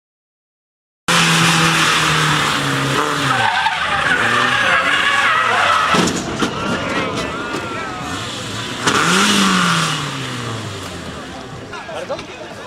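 A Peugeot 306 rally car's engine revving and dropping off while its tyres squeal and skid, with a sharp knock about six seconds in and another brief rise and fall of revs near the end. The sound starts abruptly after about a second of silence.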